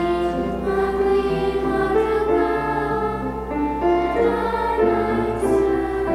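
Children's choir singing with piano accompaniment, sustained notes changing steadily.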